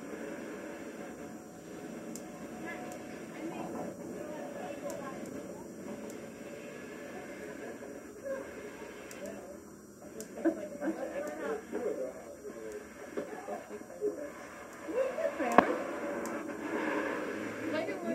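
Indistinct voices of people talking, louder and busier in the second half, with one sharp click about three-quarters of the way through.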